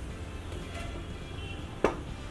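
Quiet background music over a low steady hum, with one sharp click near the end.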